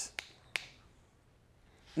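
Two finger snaps about a third of a second apart, beating out the quarter-second rhythm of thinking between shots.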